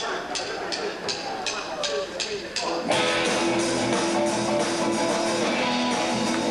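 Live rock band starting a song: a steady ticking from the drum kit about three times a second, then a bit under three seconds in, electric guitars and drums come in together and keep playing.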